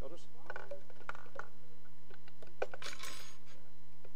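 Spoons clinking and tapping against cups as salt and baking soda are stirred into water, a series of short sharp clinks, with a brief rushing noise about three seconds in.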